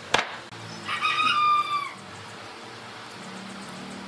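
A single wooden knock as a plank is set down on the workbench, then a rooster crowing once, about a second long and dropping in pitch at the end, about a second in.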